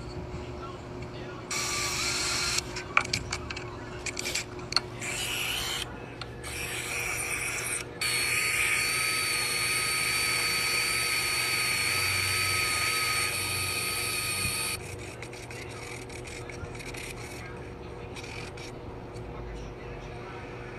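Electric power sander with a high whine, a carved wooden cup pressed against its sanding pad. It sands in short bursts for the first few seconds, then runs steadily for about seven seconds and stops suddenly.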